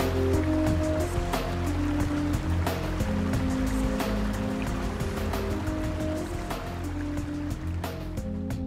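Background music of slow, sustained notes over the steady rush of a stream cascading over rocks; the water sound drops away at the very end.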